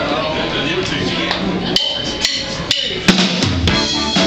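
Live band starting a song: held keyboard and guitar tones, then, from about a second in, a row of sharp drum hits roughly two a second.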